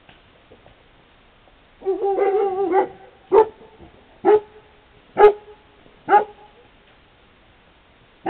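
Maremma-Abruzzese sheepdog puppies, about four weeks old: a high drawn-out yelp lasting about a second, starting about two seconds in, then four short high barks about a second apart.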